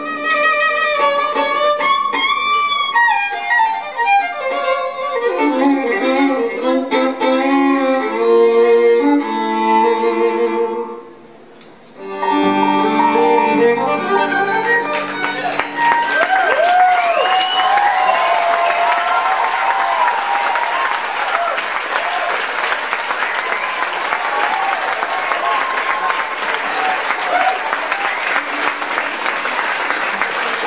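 Bluegrass band playing the close of a tune, a fiddle leading over banjo, mandolin, guitar and upright bass, with a brief stop about eleven seconds in and a few final notes. From about halfway through, audience applause with whistles.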